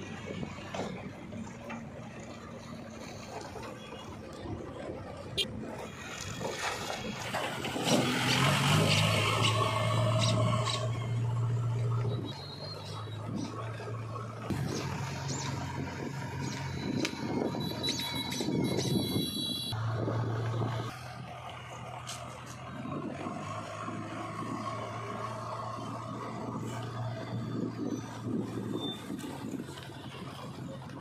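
JCB 3DX backhoe loader's diesel engine running as the machine drives along a road: a steady low hum that gets louder for a few seconds about a quarter of the way in, and again in the middle, then settles back.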